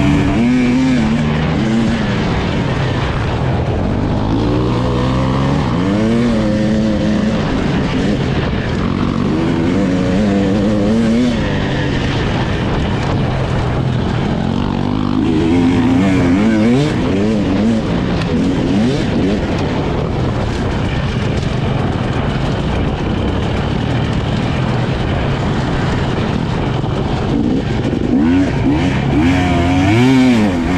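Husqvarna enduro motorcycle engine under hard throttle on a dirt trail, its pitch repeatedly climbing and dropping back as the rider accelerates and shifts, with steadier stretches in between.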